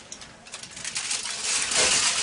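Aluminium-foil-covered cake tin being pushed into an oven: a scratchy rustle and scrape of foil and tin against the oven rack that starts about half a second in and grows louder toward the end.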